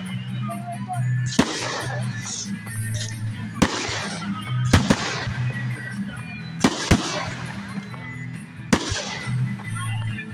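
Aerial fireworks bursting: about seven sharp bangs at irregular intervals, some in quick pairs, each trailing off briefly.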